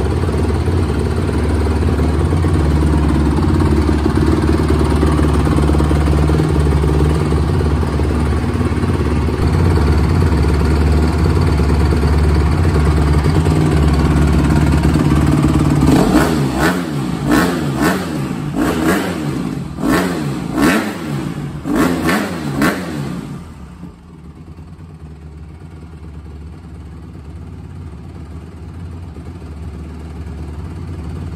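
2008 Honda CRF150R single-cylinder four-stroke dirt bike engine running at a steady idle on a cold start after a carb clean and valve adjustment for a bog, then revved in a run of quick throttle blips. About three-quarters of the way through, the sound drops sharply to a much lower level.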